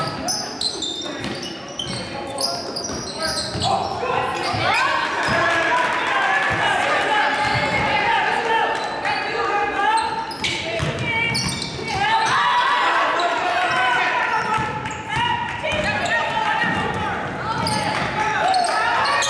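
Basketball bouncing on a hardwood gym floor as it is dribbled, with indistinct shouting voices echoing in a large gym.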